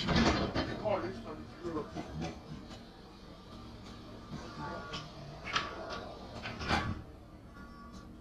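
Indistinct voices talking, pitched unnaturally low, over the steady low drone of a moving bus heard from inside.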